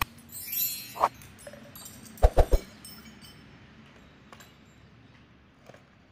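Steel drill bits being handled on a concrete floor, giving a few short metallic clinks, the loudest a quick cluster of three about two seconds in, then only faint handling ticks.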